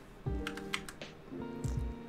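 A few computer keyboard keystrokes over background music with held notes.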